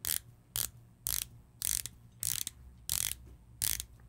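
Dive bezel with a ceramic insert on a Jaeger-LeCoultre Master Compressor Diving Chronograph GMT being turned by hand in short strokes. It gives about seven quick bursts of ratchet clicks, one every half second or so. The action is sharp and crisp.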